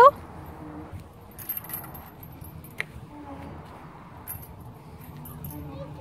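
Swing-set chains jingling faintly as the swings move, in two short spells, with one sharp click near the middle.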